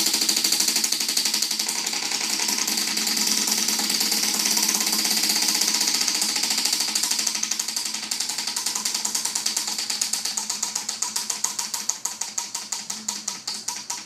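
Spinning prize wheel, its pointer flapper clicking against the pegs round the rim: a rapid, dense rattle at first that slows into separate ticks, a few a second near the end, as the wheel coasts to a stop.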